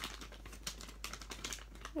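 Plastic toy-packaging wrapper crinkling and crackling as it is handled, an irregular run of small clicks.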